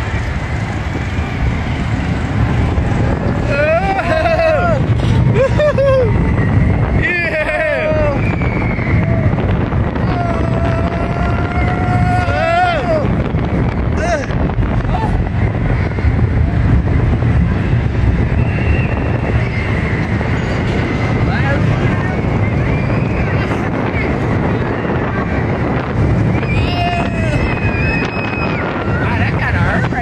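A steel roller coaster car runs along its track, its steady rumble mixed with wind rushing over the phone's microphone. Riders shout and scream several times: around 4 and 7 seconds in, again at about 10 to 13 seconds, and near the end.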